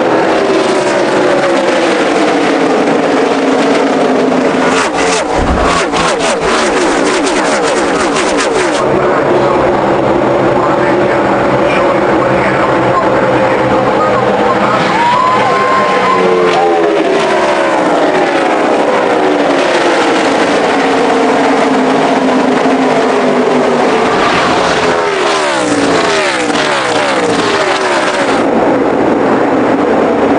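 A pack of NASCAR stock cars with V8 engines running at speed, the engines of many cars sounding together. The engine pitch falls again and again as the cars sweep past, most noticeably about halfway through and again near the end.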